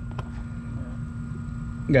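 A steady low hum with a faint click just after the start, then a man's voice begins near the end.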